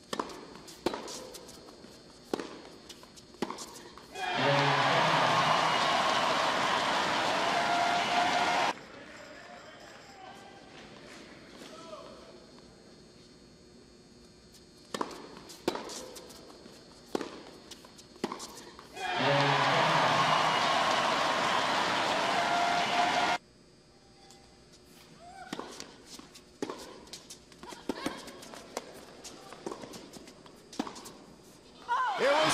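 Tennis rallies: racket strikes on the ball and other short sharp hits, with two bursts of crowd cheering and applause after points, each lasting about four seconds and cut off suddenly.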